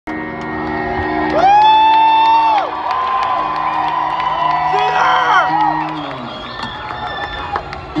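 Concert crowd cheering and whooping. One long, loud whoop comes about a second and a half in and shorter shouts about five seconds in, over steady held notes from the stage.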